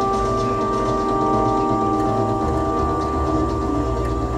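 Live electronic drone music: several sustained steady tones held over a low rumble, which thickens about two and a half seconds in.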